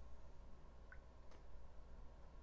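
Very faint stirring of melted oil and shea butter chunks with a silicone spatula in a ceramic bowl, with a soft tick about a second in and another faint click shortly after, over a low steady hum.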